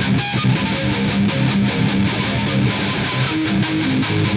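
Distorted eight-string electric violin playing a looped rock improvisation: a repeating low riff with sustained notes above it.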